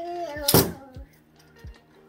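One hard smack about half a second in: an expandable baton struck down forcefully to collapse its telescoping sections, with a brief ringing tail. A few fainter knocks follow.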